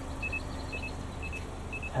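A car's electronic warning beeper sounding short, high-pitched double beeps about twice a second, over a faint steady low hum.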